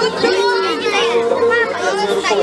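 Several children and adults talking over one another in a busy group, voices overlapping throughout.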